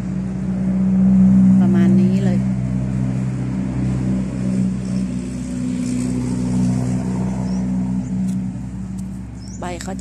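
A motor running steadily with a low, even hum that swells about a second in and eases off toward the end; a brief voice is heard around two seconds in.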